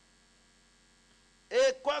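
Faint steady electrical mains hum in a pause in the speech, then a man's voice starts speaking about one and a half seconds in.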